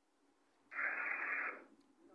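A burst of radio static hiss, starting under a second in and lasting just under a second, with its treble cut off sharply as if from a small radio speaker.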